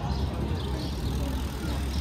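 Busy city promenade ambience: a steady low rumble with passersby talking.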